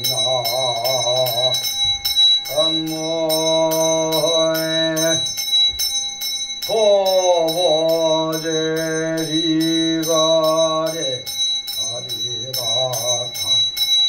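Buddhist monk's chant in long, wavering held notes, broken off every few seconds for breath, over a small handbell rung in a steady rhythm of about three strokes a second.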